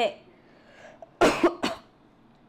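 A woman coughs twice in quick succession, the first cough longer and louder than the second.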